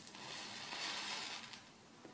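Safety match head flaring up with a faint hiss after a drop of concentrated sulfuric acid, the acid reacting with the chlorate in the head. The hiss swells for about a second and dies away after about a second and a half.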